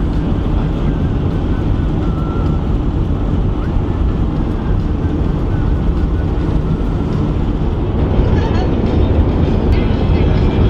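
Steady road and engine noise inside the cabin of a car driving at highway speed.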